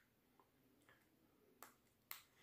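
Near silence with a few faint clicks of the Samsung Galaxy A70's small parts being handled and pressed into place as the main board is fitted into the phone's frame; the clearest click comes near the end.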